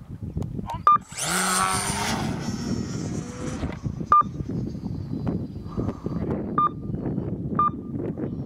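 F5B electric competition glider climbing under full motor power just after a hand launch: a loud, high-pitched motor and propeller whine rising in pitch for about three seconds, then cutting off. Four short electronic beeps at the same pitch follow over the next few seconds, with wind on the microphone throughout.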